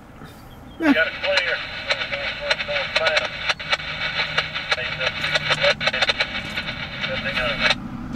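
A railroad scanner radio transmission: a train crew's voice, thin and hissy, calling a signal ("North Acworth, northbound... A760-11, engine 1700"), the crew reporting a clear signal at North Acworth. It opens about a second in and cuts off sharply just before the end.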